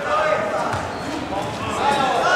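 A few dull thuds from a light-contact kickboxing bout, strikes on padded gear and feet on the mat, echoing in a large sports hall, with shouting voices over them.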